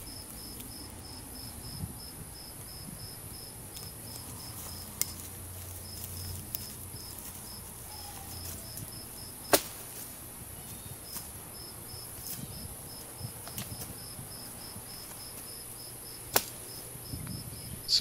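A cricket chirping steadily, about three chirps a second with a couple of short pauses, over a steady high hiss. A few sharp snaps stand out, the loudest about halfway through and near the end.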